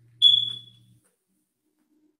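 A single high-pitched electronic beep, about half a second long, fading away at its end. A faint low hum under it stops about a second in.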